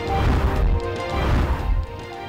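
A news bulletin's transition sting: a loud whooshing crash with deep bass over a music bed, cutting off just before the next item.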